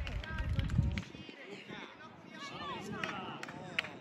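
Distant shouts and calls of young players and onlookers across an outdoor football pitch, with a low rumble on the microphone that stops about a second in and a few short knocks.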